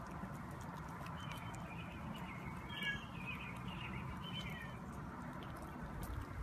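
Domestic cat making several short, high-pitched mews and squeaks while eating, with faint clicks of chewing.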